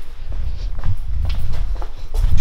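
Footsteps on a concrete floor with a low rumble of handling noise from a camera being carried, and a few light knocks.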